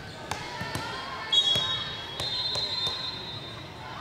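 Volleyball bouncing on the hard court floor as the server readies to serve: a few sharp, irregular thuds in an echoing hall. A faint, steady high tone runs from about a third of the way in to the end.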